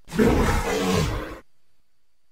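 Creature sound effect: a single roar about a second and a half long that cuts off suddenly.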